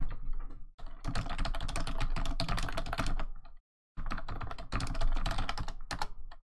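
Fast typing on a computer keyboard: a message being typed out in a few quick runs of key clicks, with short pauses between them.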